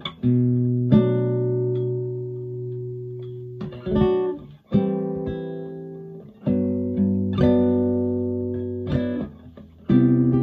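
Classical guitar strummed in slow chords through a Samson Expedition Express portable speaker. A new chord is struck every second or two and each is left to ring and fade before the next.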